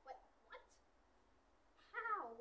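Near silence, broken by two brief, faint, squeaky vocal sounds right at the start and about half a second in. A louder vocal sound that wavers and falls in pitch begins just before the end.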